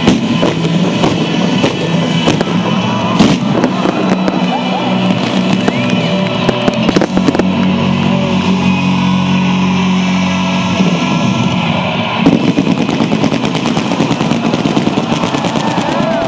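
A fireworks display firing fans of comets in quick succession: a stream of sharp reports and crackle over sustained background music. About three-quarters of the way through, the firing turns into a dense, rapid string of shots.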